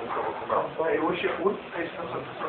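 Indistinct speech, quieter than the talk around it, on a low-bandwidth old tape recording.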